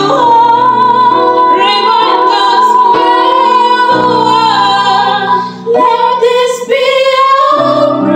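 Two women singing a slow ballad duet over electronic keyboard chords. A long high note is held, breaks briefly a little past halfway, then the next phrase begins and climbs toward the end.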